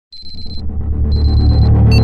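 Sci-fi logo-intro sound design: a low rumble swelling louder, with two half-second runs of rapid high electronic beeping, one at the start and one about a second in.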